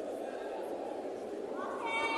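Steady murmur of a crowd in a large sports hall, with a raised voice calling out in a rising tone near the end.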